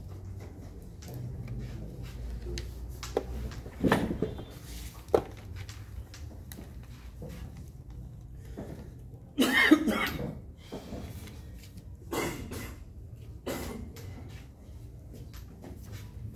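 A person coughing several times in a small room. The loudest cough comes about nine and a half seconds in.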